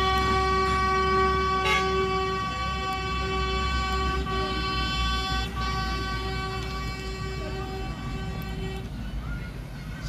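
A vehicle horn sounding one steady note, held for about nine seconds before it stops, over a low rumble.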